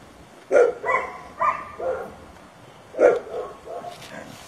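A dog barking in a run of short, sharp barks, about five in all, the loudest about three seconds in.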